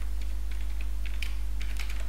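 Computer keyboard typing: a quick run of light keystrokes, over a steady low electrical hum.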